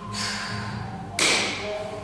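A man breathing hard and forcefully while psyching up for a heavy lift, with a sharp, loud burst a little past a second in.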